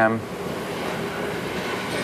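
Steady, even background noise of a gym room with no distinct events, just after a man's voice trails off.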